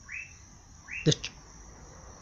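A bird's short high call, rising quickly to a briefly held note, given twice about a second apart.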